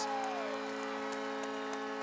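Hockey arena goal horn holding a steady chord of several tones over faint crowd noise, sounding just after a goal.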